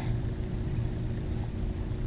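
Steady low rumble with a faint steady hum: background noise of a kayak drifting on calm water, picked up by an action camera's microphone in its housing.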